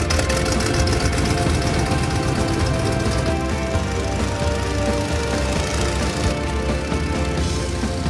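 Background music over the running engine of a Curtiss Jenny biplane, a steady low rumble beneath the music.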